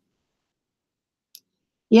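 Near silence broken by a single short, sharp click a little over a second in; a woman's voice starts just at the end.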